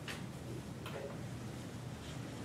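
Quiet room tone with a steady low hum and two faint clicks about a second apart.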